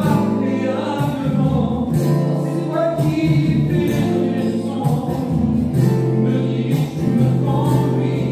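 A French hymn (cantique) sung by several voices in slow, long held notes, each pitch sustained for about a second before the line moves on.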